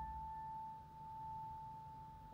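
A single high piano note, struck just before, rings on as one clear tone and slowly fades.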